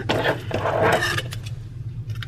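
Plastic wrapping on a pack of paperback books crinkling and scraping as it is handled and pulled at, loudest in the first second, then a few faint clicks. A steady low hum runs underneath.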